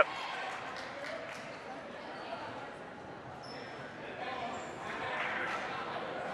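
Spectators in a gymnasium murmuring and chattering at a low, steady level during a stoppage in play. The murmur swells slightly near the end.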